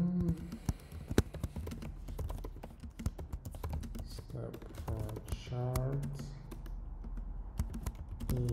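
Typing on a computer keyboard: quick, irregular keystroke clicks as code is entered.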